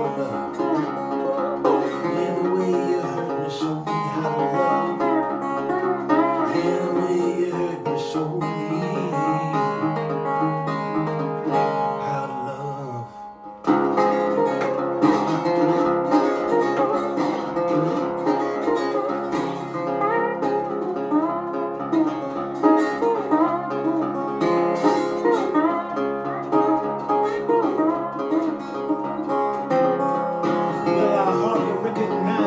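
Metal-bodied resonator guitar picked with a slide, playing blues with gliding notes. About thirteen seconds in the playing thins out and nearly stops for a moment, then starts up again.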